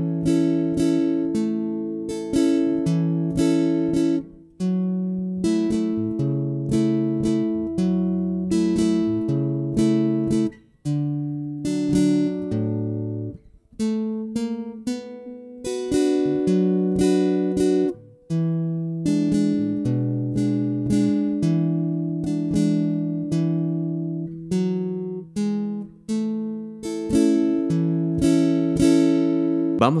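Acoustic guitar played slowly in a repeating bass-and-strum pattern: a bass note, an upstroke, a downstroke, a second bass note, then two downstrokes. The chords change through A, F-sharp minor 7, D, B minor and E7.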